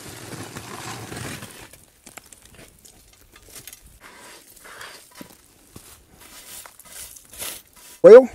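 Aluminium foil crinkling and tearing, with coals and ash scraping and clicking, as a foil-wrapped cast iron Dutch oven is uncovered and lifted out of a pit of coals. The rustling is irregular and densest in the first second or so.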